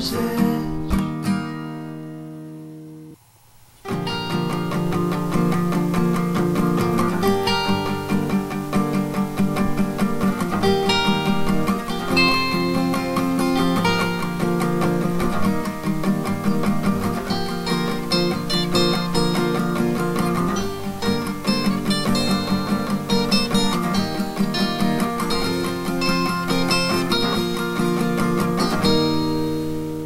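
Instrumental guitar break of a song, with no singing: a chord rings out and dies away, there is a brief pause about three seconds in, then acoustic guitar picking and strumming resumes.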